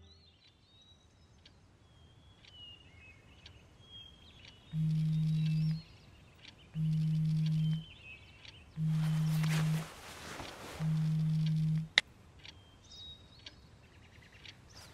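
A smartphone vibrating on a wooden table: four buzzes, each about a second long and two seconds apart, over faint bird chirps. A sharp click comes just after the last buzz.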